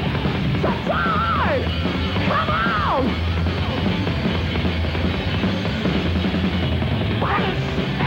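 Heavy metal band playing live: drums and amplified instruments at a steady loud level, with high sliding vocal wails about a second in, again around two to three seconds in, and near the end. The top end is dull, as on an old TV recording.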